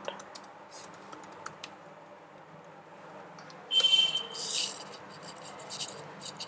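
Quiet room tone with a few faint clicks, and a short scratchy rub about four seconds in followed by a softer one: computer mouse handling and clicking while the app is tested.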